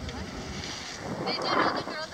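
Wind buffeting the microphone as a steady low rumble, with a faint voice from someone nearby heard briefly about a second and a half in.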